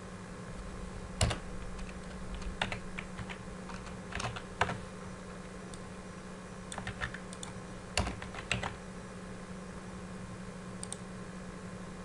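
Sparse keystrokes on a computer keyboard: single taps and a few short runs of clicks, spread unevenly, over a steady low hum.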